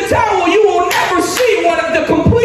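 Two sharp hand claps about a second in, over a man's voice calling out in drawn-out, held tones.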